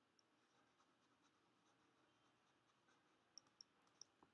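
Near silence, with a few faint ticks of a stylus on a drawing tablet, two of them close together near the end.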